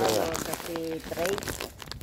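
Plastic bags crinkling as they are handled, under a voice talking quietly.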